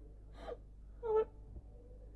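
A person's short breath about half a second in, then a brief voiced sound about a second in: non-word vocal sounds such as a gasp or a murmur.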